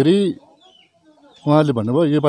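A man speaking, broken by a pause of about a second in which a faint, brief bird chirp is heard.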